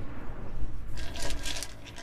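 Garden stones clicking and scraping together as they are handled, in a cluster from about a second in, over a low steady rumble.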